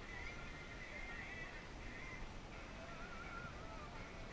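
Faint, far-off voices of people on the beach calling out over a steady low outdoor rumble.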